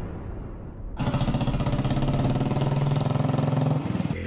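Motorcycle engine running at a steady idle, starting about a second in and cutting off sharply just before the end.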